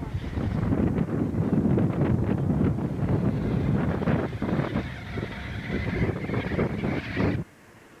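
Wind buffeting a camcorder microphone on a moving ski chairlift: a loud, uneven low rumble that cuts off abruptly about seven seconds in as the recording stops.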